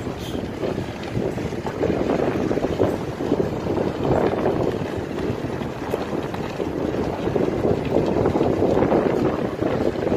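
Wind buffeting the microphone together with the running noise of a moving vehicle: a steady, rushing rumble that swells and eases a little.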